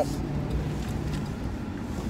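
A car's engine and tyres giving a steady low hum, heard from inside the cabin as the car pulls out.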